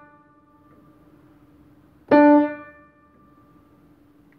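Acoustic upright piano: a single note is struck about two seconds in and released after about half a second. Both before and after it, a faint, steady tone rings on from the strings of a key held down silently, vibrating in sympathy with the struck note a fifth away.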